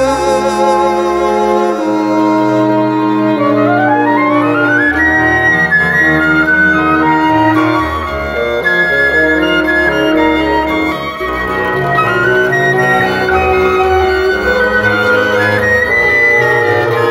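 Woodwind ensemble of flute, clarinet, French horn and bassoon, with acoustic guitar and mandolin, playing an instrumental passage of a slow folk song. The flute leads, and a quick rising run climbs about four seconds in.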